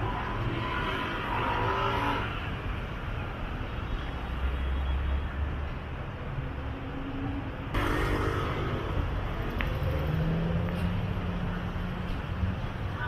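Street traffic at a city intersection: motorbike and car engines running and passing, a steady low rumble with an engine drone that swells and fades.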